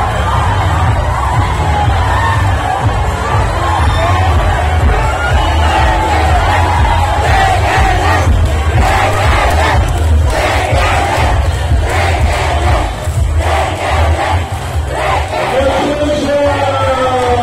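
A large crowd cheering and shouting together in celebration, many voices at once, over a steady low rumble.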